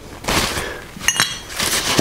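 Paper towel rubbing and crinkling, with one short, ringing metallic clink about a second in as the steel engine bearing shell is picked up. More rubbing follows as the shell is wiped clean with lacquer thinner before it is fitted.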